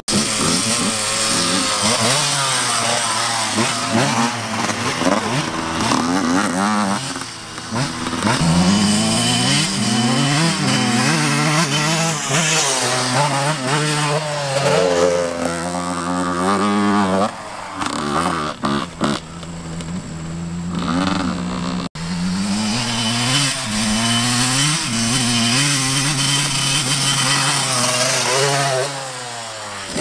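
Small dirt bike engines running and revving, their pitch rising and falling again and again as the bikes speed up and slow down, at times two bikes heard together.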